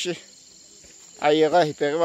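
Steady high-pitched insect drone over the rice field. A person's voice calls out loudly in drawn-out syllables for most of the last second.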